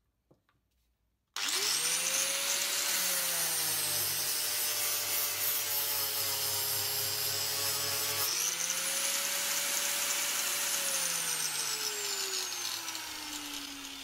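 Corded angle grinder with a sanding disc, its speed set through a dimmer switch, starting up about a second in and spinning up to a high whine. Its pitch sits a little lower while the disc sands the wooden board, rises again about eight seconds in, then falls steadily over the last few seconds as the speed is turned down.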